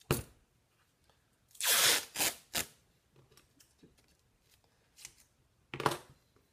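Masking tape ripping as it is pulled off the roll: one longer rip about a second and a half in, two short rips just after, and another short rip near the end.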